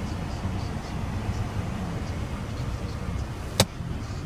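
Steady low rumble inside a stationary car's cabin, with a single sharp click about three and a half seconds in.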